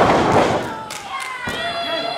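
A wrestler slammed down onto the ring mat: one loud thud right at the start that rings on briefly through the ring, then a sharper thump about a second and a half in.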